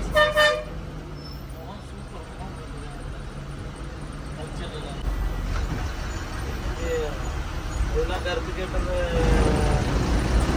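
A single short toot of the bus horn right at the start, over the steady low drone of the bus's diesel engine heard from the driver's cab. The engine drone grows louder from about halfway through.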